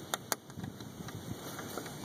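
A metal hook latch on a wooden chicken coop door clicking twice as it is worked loose, followed by faint handling noise.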